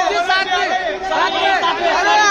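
Several voices talking and calling out over one another: photographers' chatter.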